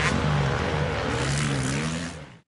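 Off-road enduro motorcycle engine revving as the bike rides on, its pitch wavering up and down.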